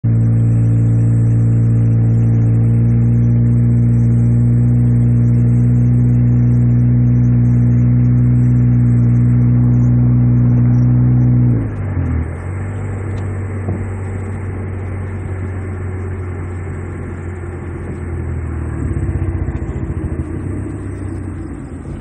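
A car's engine and road noise heard from inside the moving car: a steady hum for the first eleven seconds or so, then the tone drops away suddenly and a quieter, rougher rumble follows.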